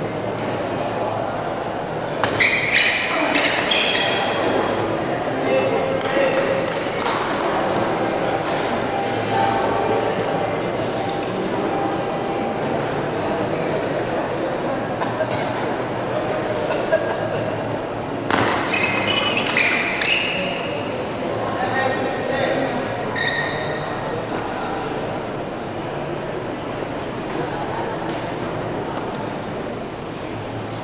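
Table tennis rallies: the celluloid ball clicking sharply off bats and table, over a steady murmur of crowd voices. Two louder bursts of shouting and cheering come about two seconds in and again around eighteen seconds in.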